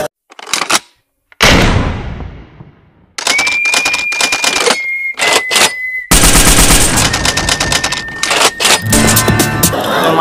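Edited-in sound effects: a single loud hit that dies away over about a second and a half, then a long run of rapid clattering clicks with a steady high beep over parts of it.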